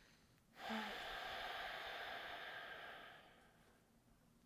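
A woman's long, deep breath: a rush of air that starts about half a second in with a brief voiced edge and fades out after about three seconds.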